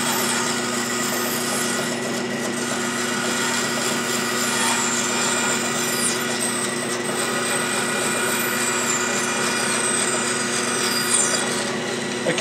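Wood-cutting bandsaw running steadily with its blade cutting a curve through a wooden board, chipping away the small pieces left by the relief cuts. A steady hum and cutting noise, with faint high whines gliding down in pitch.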